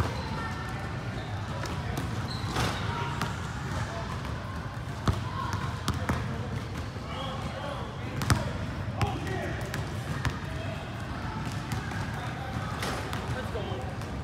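Basketball bouncing on a hardwood gym court: single sharp bounces at irregular intervals, a few of them louder, over a steady low hum.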